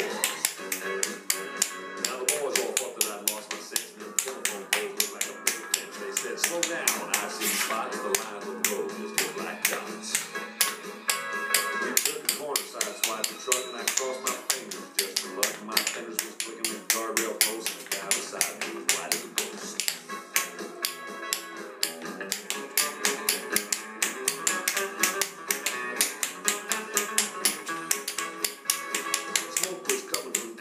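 Tap shoes striking a hard floor in quick, rhythmic taps, over an upbeat country-rock recording.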